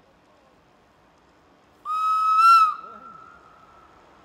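Matterhorn Gotthard Bahn narrow-gauge train sounding its warning whistle once: a single high, steady tone just under a second long that rises slightly before it cuts off, followed by a fainter trailing echo.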